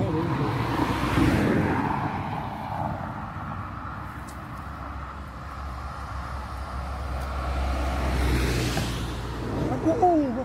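Road traffic on an adjacent road: one vehicle passes about a second in, with a low rumble building and another vehicle passing near the end.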